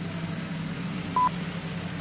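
A single short electronic beep about a second in, the time pip of a French speaking clock (horloge parlante) mixed into the broadcast sound, over a steady low hum.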